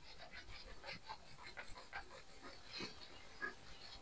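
A whiteboard eraser wiping the board in a run of short, faint rubbing strokes, several a second.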